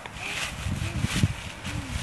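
Dry fallen leaves rustling and crunching as children scuffle, kick and throw them, with irregular heavy thumps of feet and a fall into the leaf layer, the loudest about a second in.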